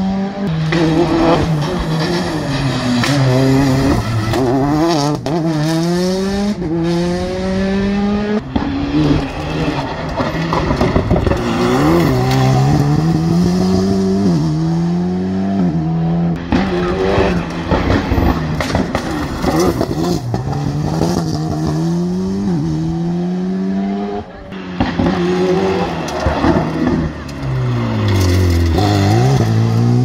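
Rally car engine revving hard, its pitch climbing and dropping back over and over as the gears change up. Near the end the pitch dips low and climbs again as a car brakes into the bend and pulls away.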